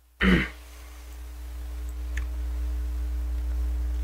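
A man clearing his throat once, briefly. Then a steady low hum that slowly grows louder, with a faint click about two seconds in.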